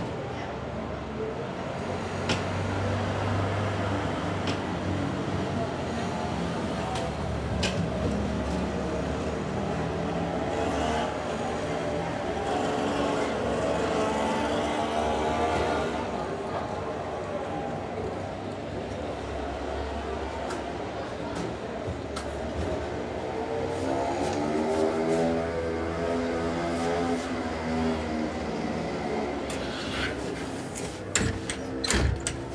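Steady low hum with a droning sound that rises and falls in pitch twice, each time over several seconds, and a few sharp clicks.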